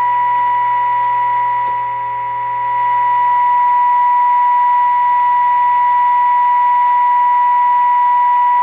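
RCA Model T62 tube radio's speaker sounding the signal generator's steady single-pitched test tone during IF alignment. The tone dips a little about two seconds in, then comes back slightly louder and holds.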